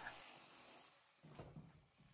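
Near silence: a pause with only faint room tone and two tiny ticks near the middle.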